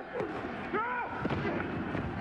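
Men's voices shouting short calls on a football field, with a few sharp knocks among them.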